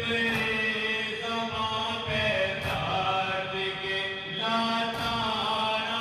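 A group of men chanting a noha, a mourning lament for Imam Hussain, in unison into microphones, with long held notes that step and slide between pitches.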